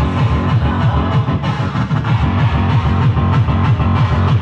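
A live band playing loud music through a club PA, driven by a fast, steady, bass-heavy beat.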